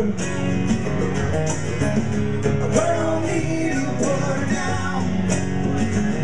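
Live band playing a rock song: strummed acoustic guitars over a steady drum beat, with sung vocals.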